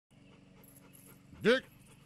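A single sharp call of a dog's name, "Gök!", rising and falling in pitch, about one and a half seconds in, over a faint low hum.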